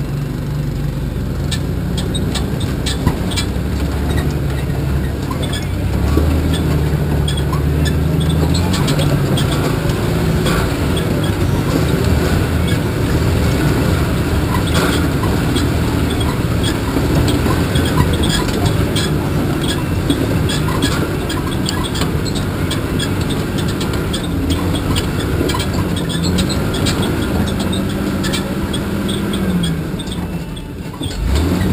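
Solid-axle-swapped Chevrolet S10 Blazer's engine running at low revs as it crawls over rough ground, its note rising and falling with the throttle. Frequent irregular clanks and rattles come from the body and suspension.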